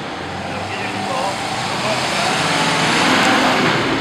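A road vehicle passing close by: its noise swells to a peak about three seconds in and then fades, with voices talking underneath.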